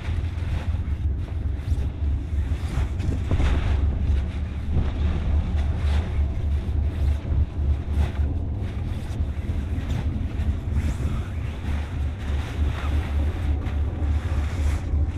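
Steady wind buffeting the microphone, a heavy low rumble, with intermittent rustling of new spinnaker sailcloth being pulled from its bag.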